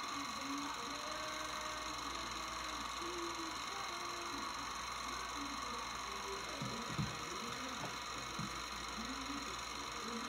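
Low, steady hiss with a constant thin high whine, with faint, muffled voices far in the background and a small click about seven seconds in.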